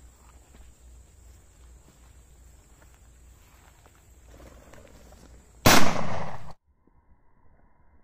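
A single loud shotgun shot from a 12-bore over-under, sudden and sharp, about six seconds in, its tail cut off abruptly less than a second later.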